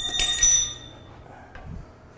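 Steel hand tools clanking on metal: two sharp metallic clanks in quick succession early on, each ringing like a bell before fading out by about halfway through.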